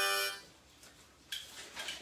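Harmonica chord held briefly, stopping about half a second in. It is followed by a quiet stretch and a short breathy hiss past the middle.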